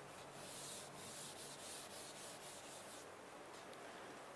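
Chalk writing on a chalkboard: a faint run of short scratching strokes lasting about two and a half seconds.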